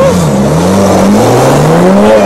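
BMW 3 Series saloon accelerating hard from a standstill. The engine note climbs, drops at an upshift about a second in, and climbs again.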